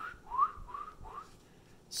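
A person whistling four or five short rising notes in quick succession, in the first second or so.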